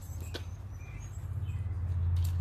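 A steady low rumble that grows louder toward the end, with a few faint bird chirps over it.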